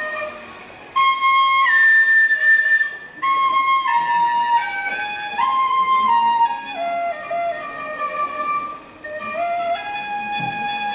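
A brass tin whistle with a red plastic mouthpiece playing a slow melody of held notes that step up and down, with short breaks for breath about a second in, around three seconds in and near the end.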